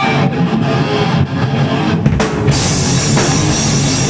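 Hardcore punk band playing live and loud: distorted electric guitar, bass guitar and drum kit kick in together at the start of a song. Cymbals come in about two seconds in and keep ringing.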